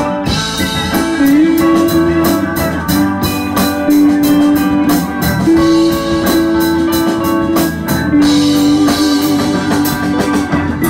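A live rock band playing an instrumental passage: electric guitar and keyboard with drums keeping a steady beat. A held lead melody note sits over the chords and bends in pitch about a second in.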